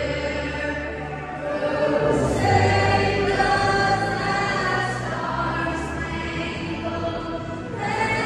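A woman singing an anthem over the arena's public-address system, holding long sustained notes that echo through the hockey arena.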